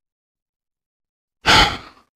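Silence, then about one and a half seconds in a person's short, breathy sigh that fades away.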